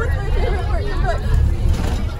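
Many girls' voices talking and calling out over one another, with no single speaker clear. Under them runs the steady low rumble of a moving school bus.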